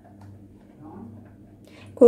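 Soft, faint stirring of flour in a steel bowl with a silicone spatula, over a steady low hum.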